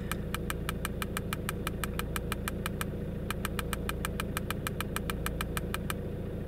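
Rapid, even clicking from a handheld OBD2 scan tool as its arrow button is held to scroll through a menu, about seven clicks a second with a short break about three seconds in. A low steady hum runs underneath.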